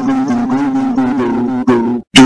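A loud, buzzy droning tone held on one low pitch, its upper overtones wavering. It cuts off abruptly right at the end.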